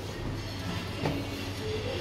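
Hütter hydraulic elevator running: a steady low hum and rumble inside the car, with a light knock about a second in.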